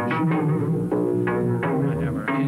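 Sampled sounds of the Golden Gate Bridge's struck metal played as pitched, plucked-sounding notes on an E-mu Emax sampling keyboard, a new note about every half second over a low repeating bass line.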